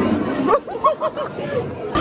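Chatter of people in a room, with one high-pitched voice giving a quick string of short rising-and-falling syllables from about half a second in.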